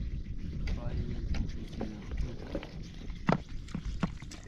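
Low voices talking, with scattered knocks and a sharp knock about three seconds in, over a steady low rumbling noise.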